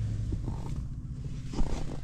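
Low, steady rumble of a pickup truck's engine heard inside the cab, with a short thump about one and a half seconds in.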